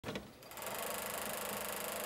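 Two brief clicks, then a steady, rapidly repeating mechanical whirr.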